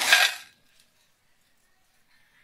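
A voice finishing a short spoken phrase in the first half second, then near silence.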